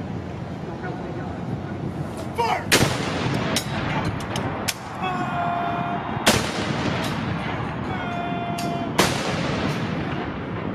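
Ceremonial salute guns firing blank rounds in a 21-gun salute: three loud cannon shots about three seconds apart, each with a short rolling echo.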